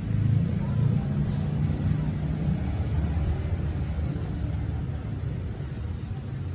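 A low, steady rumble, a little louder in the first two or three seconds.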